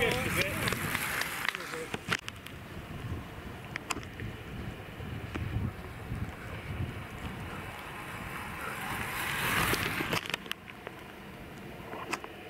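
Outdoor roadside ambience with wind on the microphone and faint voices, a rushing noise that swells near the end and cuts off, and a few sharp clicks.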